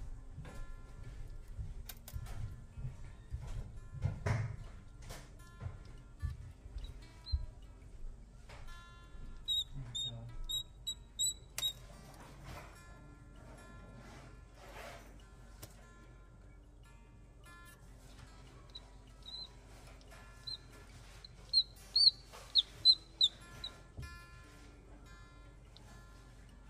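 A newly hatched chick peeping in short, high chirps: a run about ten seconds in and a louder run near the end, over soft background music.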